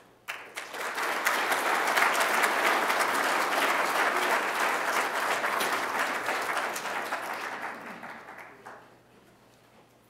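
Audience applauding: many hands clapping, starting within the first second, holding steady and dying away about eight to nine seconds in.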